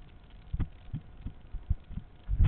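Footsteps on hard dirt, heard as dull low thumps about two to three a second through a body-worn camera.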